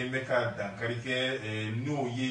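A man talking steadily in a radio broadcast.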